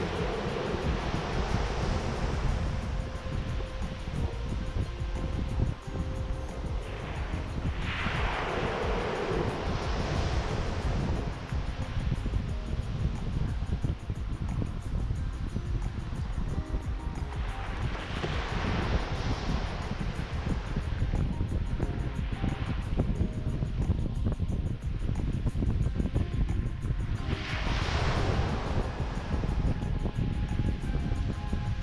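Small waves washing up a sandy beach right at the microphone, each swash of surf swelling and fading about every ten seconds, four in all, over a steady rumble of wind on the microphone. Soft background music runs beneath.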